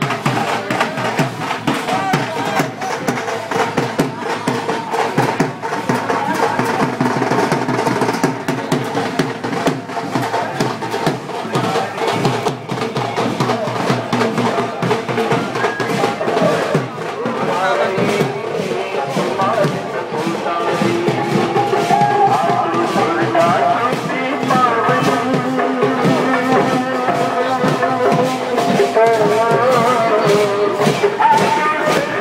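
Processional drums beaten with sticks in a fast, dense rhythm amid crowd voices. About halfway through, a wavering melody joins the drumming.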